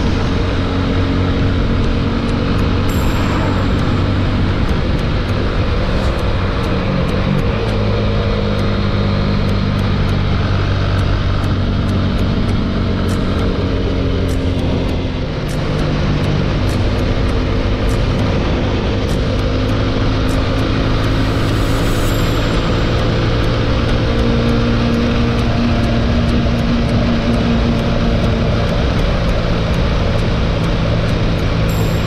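Single-cylinder engine of a TVS Apache 200 motorcycle running steadily at highway cruising speed, heard from the rider's position with heavy wind rush. The engine eases off briefly about halfway through.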